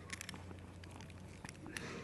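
Faint, irregular small clicks and scrapes of a plastic ballpoint pen being twisted inside a Kryptonite tubular bike lock's keyway, the pen barrel forcing the plug round in a self-impressioning attack.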